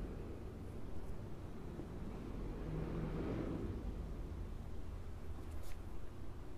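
Steady low outdoor background rumble, with a broad swell rising and fading about three seconds in.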